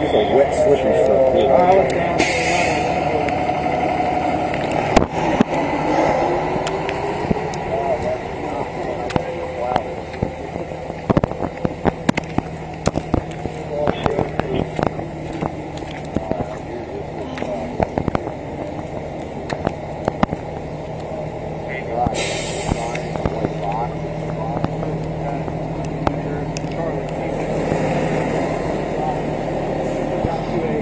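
A steady vehicle engine hum under indistinct voices, with scattered clicks and knocks on the microphone and two short bursts of hiss, about two seconds in and again past twenty seconds.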